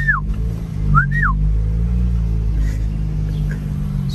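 Two short whistles to call a dog, about a second apart, each rising and then falling in pitch. Underneath is the steady low hum of the car's engine.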